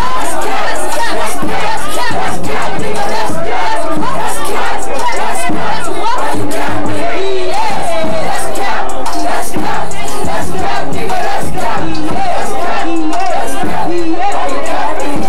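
Packed crowd shouting and yelling over a DJ's hip-hop music at a live rap session, very loud throughout, with many voices at once.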